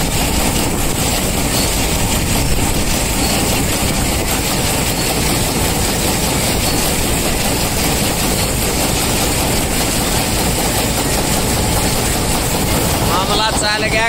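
Combine harvester running steadily at close range while its unloading auger pours threshed wheat into a trailer: a loud, even machine noise with the rush of falling grain, unbroken throughout.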